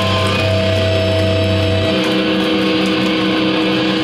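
A live hardcore band's amplified electric guitars hold long sustained notes that ring on steadily and loudly. A low bass note drops out about two seconds in.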